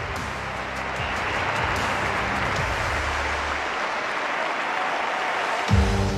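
Steady crowd applause over background music; the music's low notes drop out a little past halfway.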